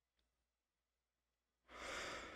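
Near silence in a small room, then a person's breathy exhale begins near the end.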